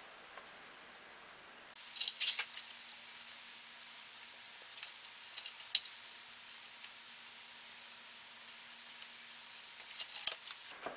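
A soaked wooden planking strip sizzles under a hot electric plank-bending iron that is rocked back and forth across it: a steady hiss with scattered sharp crackles, starting about two seconds in. The water in the wood is flashing to steam as the heat bends the plank into a curve.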